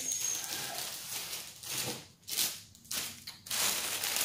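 Thin plastic shopping bag rustling and crinkling in uneven bursts as hands rummage through it, with a couple of brief lulls near the middle.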